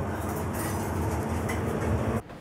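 Commercial kitchen ambience: a steady low rumble of extractor hood fans with light clatter over it.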